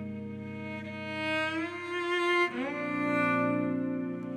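Slow ballad on bowed cello with electric guitar. The cello slides up in pitch twice, a bit past the middle, each time into a new held note, as a low sustained chord fades under it.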